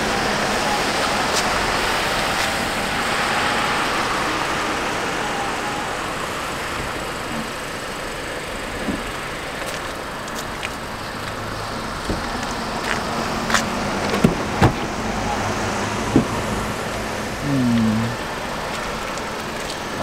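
Mercedes-Benz convertible's power soft top closing: the roof mechanism runs steadily as the fabric top rises over the cabin, with a few sharp clicks about two thirds of the way through.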